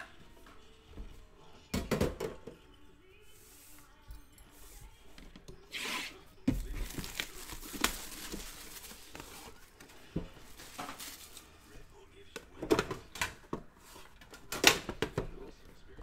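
Cellophane shrink wrap being torn and crinkled off a sealed trading-card box for a few seconds in the middle, with sharp knocks and taps of the box being handled before and after.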